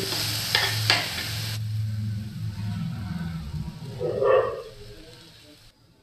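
Metal spoon stirring and scraping split moong dal as it roasts in a little ghee in a kadhai on low flame, with a faint sizzle and a couple of sharp clicks of the spoon on the pan. The sizzle stops about a second and a half in, and the sound fades away toward the end.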